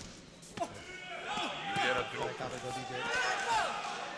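Two sharp thuds of boxing-glove punches about half a second apart at the start, then loud raised voices shouting over the ring.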